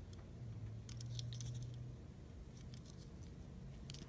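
Faint handling sounds of a die-cast Hot Wheels car turned over in the hand: a few light, scattered clicks over a low steady hum.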